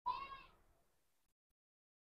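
A cat meowing once, a short call of about half a second at the start.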